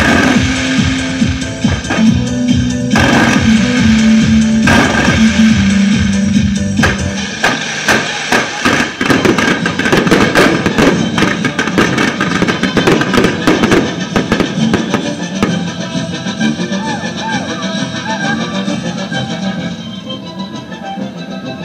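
Loud music with a stepping bass line, over the crackling and popping of a burning castillo, a fireworks tower with spinning wheels and fountains. The crackles come thickest through the middle of the stretch.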